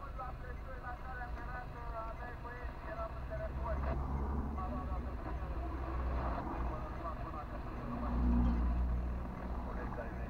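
Car engine idling in stopped traffic, heard from inside the cabin as a steady low rumble. A louder rumble with a steady hum swells about eight seconds in and then fades.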